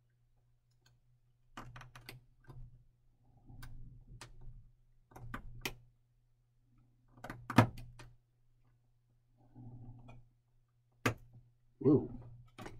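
Scattered sharp clicks and light taps of a hobby knife and tiny plastic kit struts on a cutting mat, as the parts are trimmed and handled. The loudest click comes about halfway through.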